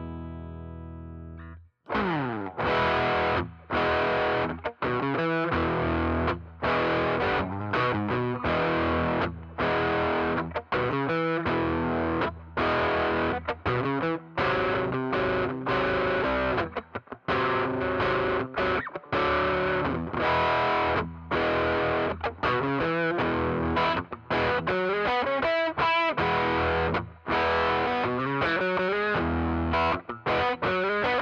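Eastman T185MX semi-hollow electric guitar played through a Mayfly Demon Girl fuzz pedal: a held fuzz chord dies away and is cut off about two seconds in, then loud, choppy fuzzed chords and riffs with frequent abrupt stops.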